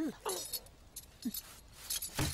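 Metal jangling and clinking in a few short bursts, with a louder burst near the end.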